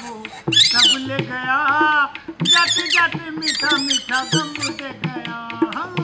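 Rajasthani puppeteer's squeaking mouth whistle (boli) voicing the string puppets in quick, high-pitched warbling chirps that break off and start again several times, with music underneath.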